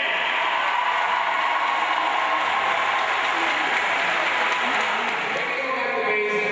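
Audience applauding steadily, with some voices mixed in.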